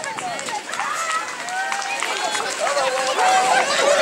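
Chatter of several people talking at once, their voices overlapping into a general babble.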